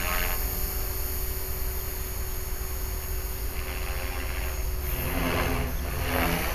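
HK-450 electric RC helicopter flying flips overhead, its motor and rotor heard as a steady distant hum with a rush of rotor noise later on. Wind buffets the microphone with a constant low rumble.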